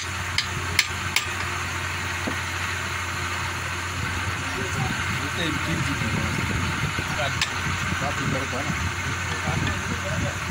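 A small hammer tapping a turned wooden piece: three quick taps in the first second or so and one more later, over a steady low hum.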